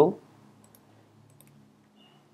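A few faint clicks from working a computer's keyboard and mouse, over a low steady hum; the last syllable of a spoken word ends right at the start.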